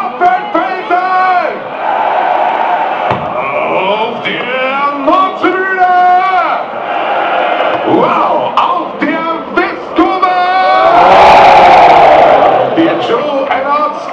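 Football stadium crowd shouting and chanting in support of the home team, swelling into a loud cheer about eleven seconds in.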